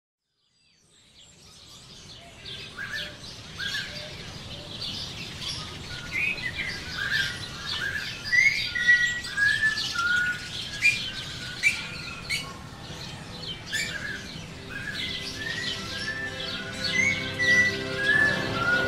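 Many birds chirping and calling in a dense chorus, fading in over the first two seconds. Toward the end, steady held music tones rise beneath the birdsong.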